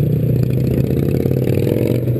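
Honda Grom's small single-cylinder four-stroke engine running steadily at an even pitch while the bike rides through traffic.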